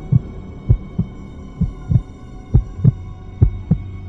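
Heartbeat sound effect: pairs of low thumps in a lub-dub rhythm, a pair a little under once a second, over a steady low drone.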